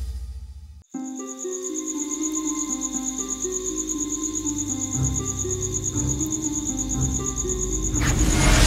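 Crickets chirping in a steady, fast-pulsing high trill, with slow, sustained low music notes beneath. It begins about a second in, after a jingle fades out.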